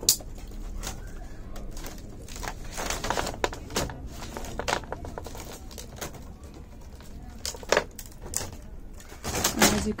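Split bamboo strips rustling, scraping and clicking as they are worked by hand into a woven hut floor, in irregular bursts.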